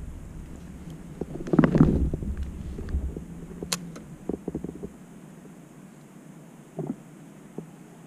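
Scattered clicks and knocks from handling a fishing rod and reel in a plastic kayak, over a low rumble that stops about five seconds in. There is a louder short burst near two seconds and a sharp click a little later.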